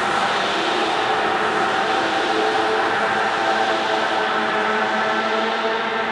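Dark ambient drone: a steady, dense wash of noise with faint held tones running through it, no beat and no sudden changes.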